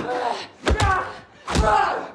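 Hard punch and body-blow impacts in a fistfight, each followed by a strained grunt: a quick double hit about two-thirds of a second in, then another hit past the halfway mark.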